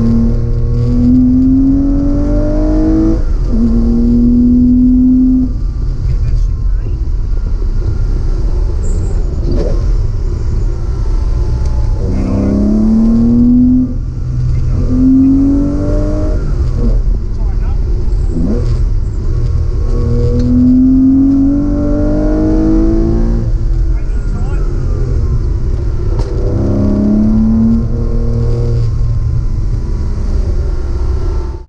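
Car engine heard from inside the cabin, accelerating hard through the gears: the pitch climbs, breaks at each shift and climbs again, in several bursts with lift-offs between them. A few sharp pops come as the throttle closes, the backfiring the driver thinks comes from extra exhaust back pressure and a slightly rich tune.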